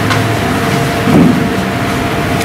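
Steady rushing hum of a meeting room's wall fan and air conditioner, loud on the camera microphone, with a brief low sound about a second in.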